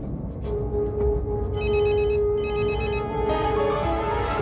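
A mobile phone ringing: two short bursts of rapid trilling ring, about one and a half and two and a half seconds in, over a held note of background music.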